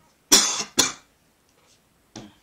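A person coughing twice in quick succession, about half a second apart.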